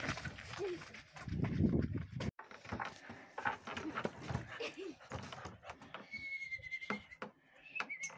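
Children's voices in the first two seconds. After an abrupt cut, an excited chained dog gives high, bleat-like cries amid short knocks and clatter as it jumps against and onto a wooden kennel.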